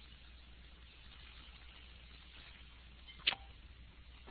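Quiet line on a web-conference recording: a faint steady low hum and hiss, with one short click a little over three seconds in.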